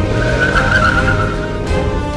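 Pickup truck pulling away with its tyres skidding, a hissing scrub that lasts about a second and a half.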